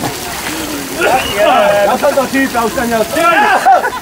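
Raised voices shouting, the words unclear, over a steady background hiss.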